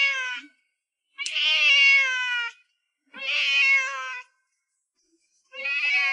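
A domestic cat meowing loudly and insistently: a string of long meows, about one every two seconds, with the first one ending just after the start. The cat is demanding food.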